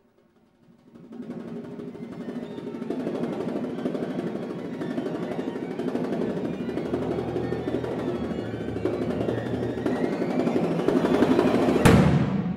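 Chamber ensemble with percussion playing a contemporary piece: a dense passage enters about a second in and swells in a long crescendo, peaking in a sharp loud hit just before the end that rings away.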